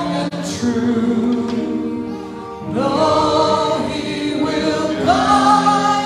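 Choir singing a sacred piece in held chords, the phrases swelling about three seconds in and again near the end.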